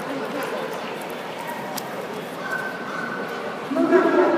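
Dogs barking and whining amid the murmur of many voices in a large, echoing hall. A louder call comes near the end.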